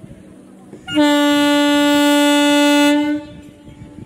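Horn of an Indian Railways EMU local train sounding one long, steady blast of about two seconds, starting about a second in, as the train pulls out of the station.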